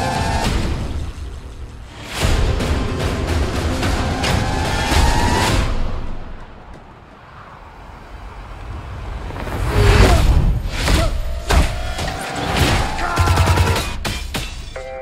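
Action-trailer music mixed with sound effects: rising swells and heavy booms, a quieter stretch in the middle, then rapid gunfire and impacts near the end.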